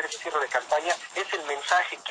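Speech only: a man talking continuously in Spanish.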